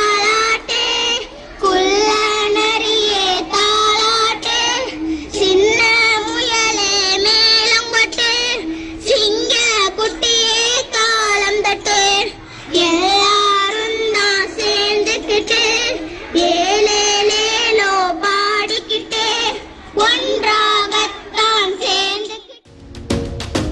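Children singing a song in melodic phrases of a few seconds each, with short breaks between them.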